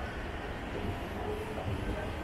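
Moving escalator running with a steady low rumble beneath the rider.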